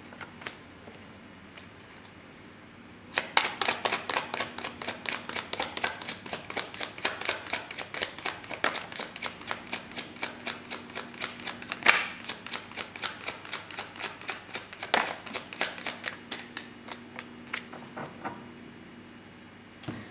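A deck of tarot cards shuffled by hand: a long run of quick card clicks and slaps, several a second, starting about three seconds in and stopping a couple of seconds before the end.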